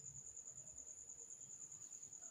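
A faint, steady, high-pitched cricket chirp, pulsing evenly at about nine or ten pulses a second.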